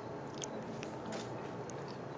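Faint chewing of a forkful of salmon, arugula and pickle relish, with a few short, soft clicks.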